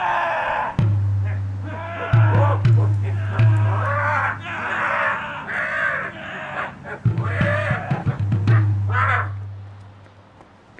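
Film soundtrack: harsh, raspy cries in repeated bursts over a low droning tone that cuts out and returns several times, fading near the end.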